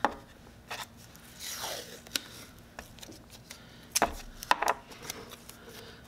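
Masking tape being pulled off its roll and torn, with scattered clicks of handling and two sharp knocks about four seconds in as the taped walnut box is set down on the wooden workbench.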